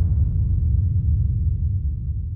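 Deep low rumble of an end-card logo sound effect, the tail of a whoosh-and-boom sting, slowly fading out toward the end.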